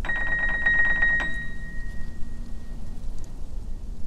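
A bell-like tone rung rapidly for about a second, its ring then dying away over the next second or so, over a steady low rumble.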